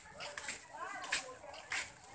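People talking in the background, with short high rising-and-falling voice sounds about a second in, over scattered sharp ticks.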